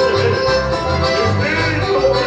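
Live chamamé music led by accordions playing a melody, over a steady pulsing bass.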